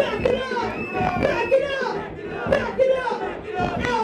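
A woman rapping live into a handheld microphone through a club PA, with crowd noise underneath.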